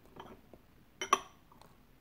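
A porcelain gaiwan clinks once about a second in: a light china tap with a brief high ring.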